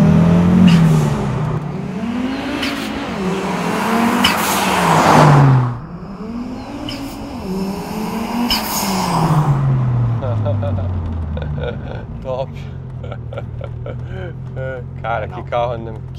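Audi RS2's turbocharged inline five-cylinder engine, fitted with a modern aftermarket turbocharger, accelerating hard. The revs climb and drop several times with each gear change, and turbo hiss rushes in around the shifts. About six seconds in it gets quieter; the revs fall away as the car slows and then settle into a steady low drone.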